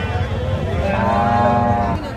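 A cow mooing once: a single long call starting a little before halfway through and lasting just over a second, over a steady background din.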